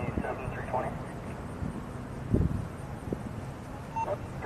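Faint distant voices over a steady low outdoor rumble, with a brief dull thump a little past the middle.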